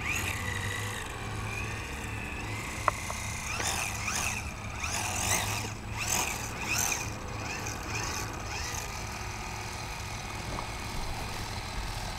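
Small brushed electric motor of a radio-controlled Cub floatplane taxiing on water: a thin high whine that rises and falls in pitch several times in the middle, over a steady low engine hum. A single sharp click comes about three seconds in.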